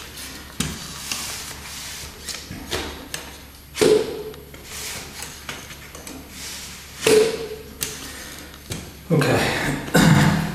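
A wooden wobble board rocking and knocking down onto a foam floor mat, with light taps from aluminium crutches; two louder knocks come about four and seven seconds in.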